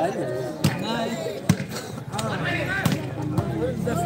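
A volleyball being struck by hands during a rally, sharp slaps about four times, over the voices of players and spectators.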